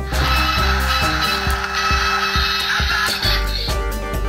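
Background music over ratcheting clicks of a plastic robot toy being transformed by hand.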